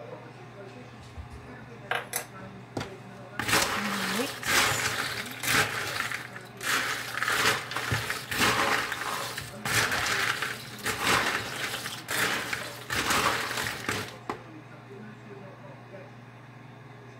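A bowlful of dry snack mix (pretzels, Bugles, peanuts and cereal pieces) being stirred and tossed with a spatula: a crisp rattling rustle in repeated strokes, about one a second, for some ten seconds, with a few light clicks just before it starts.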